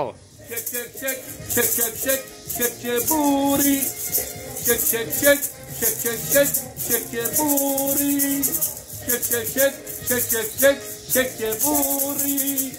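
A pair of plastic maracas shaken in a quick, steady rhythm along with a disco song playing from a TV.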